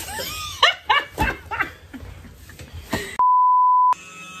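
A steady pure censor bleep lasting under a second near the end, the loudest sound here, with all other sound cut out beneath it. Before it come short high yelps and whines that rise and fall in pitch.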